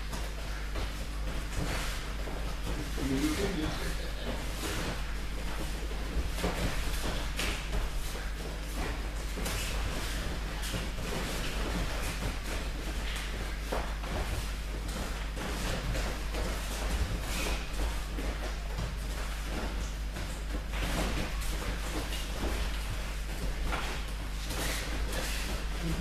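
Bare feet shuffling and thudding on gym wrestling mats during standing grappling, with irregular knocks and clothing rustle, over a steady low hum.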